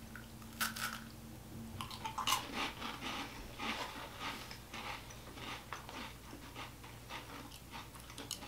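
Quiet, irregular crunching and chewing of light, crisp coconut wafer rolls being bitten and eaten.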